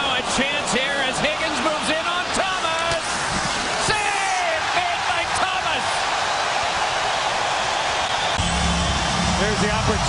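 Ice hockey arena crowd din with shouts and sharp clicks of sticks and puck on the ice in the first few seconds, settling into a steady crowd roar; a low steady hum comes in about eight seconds in.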